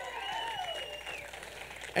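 Congregation applauding, an even patter of clapping, with a faint steady high tone ringing over it.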